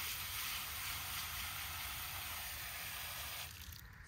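Water from a garden hose spray nozzle running steadily into a nursery pot, soaking the plant's root ball before transplanting. The hiss stops about three and a half seconds in.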